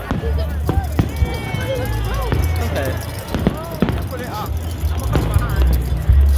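Live band music from an outdoor stage carrying over a crowd, with a heavy low bass and voices close by. A few sharp knocks are scattered through it.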